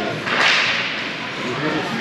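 Ice hockey play on rink ice: a sharp, hissing scrape on the ice about half a second in, fading quickly, over a murmur of voices in the rink.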